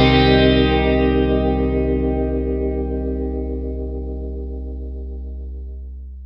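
Music: a single guitar chord held and left to ring, slowly fading away.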